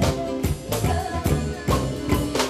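Live folk band playing a tarantella: accordion and guitar chords over a steady, driving drum beat of about three strokes a second, with a woman singing.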